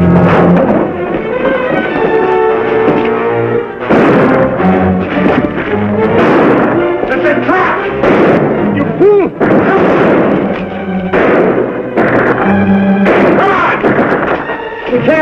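Dramatic orchestral film score playing loudly, with gunshots fired several times over it.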